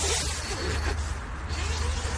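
Nylon tent fabric and clothing rustling as a person shifts and turns on the tent floor toward the door, over a steady low rumble.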